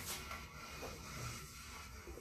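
Faint rustling and handling noise with a few soft ticks, over a low steady hum.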